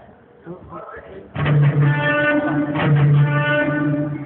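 Guitar playing loud, held chords with a strong low note, starting suddenly about a third of the way in after a few quiet words.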